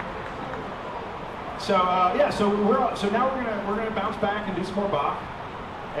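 A man talking, a few seconds of speech that starts about two seconds in; no music is playing.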